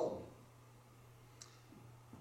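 Near silence: room tone with a steady low hum and one faint, brief click about one and a half seconds in.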